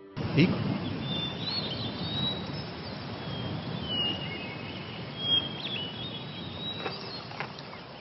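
Birds singing: thin, high whistled calls and short chirps come and go over a steady rushing background noise.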